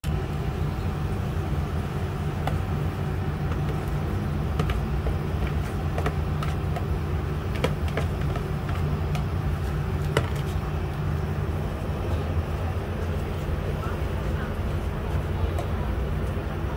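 Meat and greens being stir-fried in a nonstick frying pan on an induction hob, with scattered spatula clicks against the pan over a steady low rumble.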